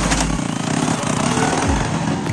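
A small motorcycle engine running as the motorcycle and its loaded cart pull away.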